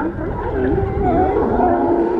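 A herd of sea lions calling over one another, a chorus of overlapping, wavering barks and drawn-out calls, over a low rumble.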